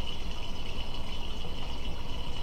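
Steady background noise: an even hiss with a faint high steady tone and no distinct events.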